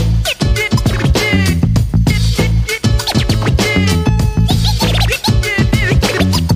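Hip hop beat with heavy bass and drums, and a DJ scratching a record over it in short, quick back-and-forth sweeps.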